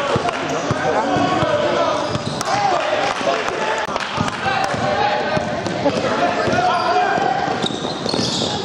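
Basketball bouncing repeatedly on a sports-hall floor as it is dribbled in play, with people's voices calling out.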